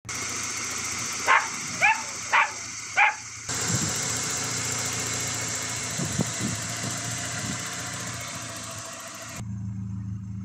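BMW M42 1.8-litre sixteen-valve four-cylinder engine of a 318iS E30 idling steadily under the open bonnet. Four short high calls sound over it in the first three seconds.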